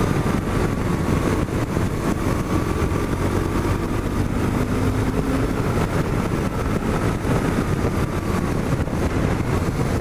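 A 1997 BMW R1100RT's air- and oil-cooled boxer twin running at a steady cruise, its note drifting slightly in pitch under dense wind and road noise.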